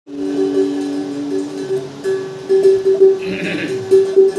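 Ektara (gopiyantra), a one-string drone lute with a brass pot resonator, plucked over and over on one ringing note in an uneven rhythm.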